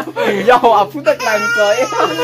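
People talking, then a small child's drawn-out, high-pitched cry starting a little past halfway.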